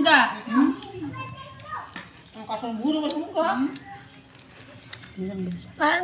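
A child's voice talking and calling out in short bursts, with a lull about two-thirds of the way through and a few faint clicks.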